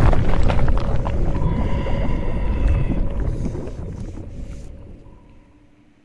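Logo-reveal sound effect: a deep rumbling boom with faint ringing tones above it, dying away gradually over about five seconds.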